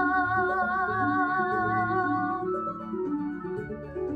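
A girl's solo singing voice holding a long note with vibrato over grand piano accompaniment. The sung note ends about two and a half seconds in, and the piano plays on alone.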